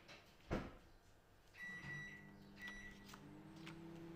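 A single knock about half a second in, then two short high electronic beeps about a second apart. A low steady machine hum starts with the first beep and keeps going.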